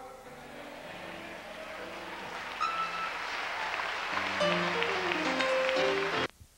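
Congregation applauding, the clapping building up, while an electronic keyboard holds low chords and then plays a descending run of notes near the end.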